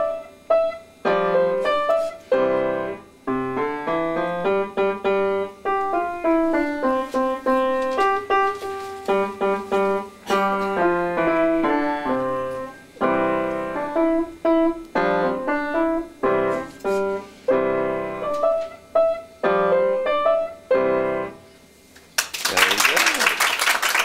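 A child playing a simple piece on an upright piano, in short phrases with brief pauses between them; the piece ends shortly before the end.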